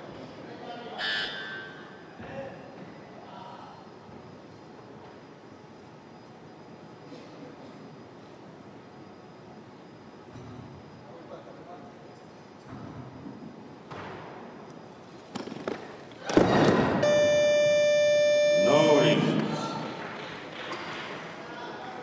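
Low murmur of an arena crowd while a weightlifter sets up at the bar. About sixteen seconds in comes a sudden loud burst of crowd noise, then a steady electronic buzzer tone lasting about two seconds: the platform's down signal that a lift is complete. Shouting and cheering follow.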